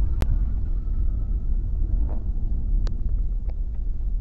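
Low, steady rumble of a Kia Carens driving in traffic, heard from inside the cabin, with two sharp clicks, one just after the start and one about three seconds in.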